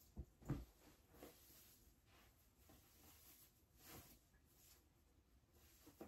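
Near silence with faint rustling of clothes being handled and folded, and a brief soft knock about half a second in.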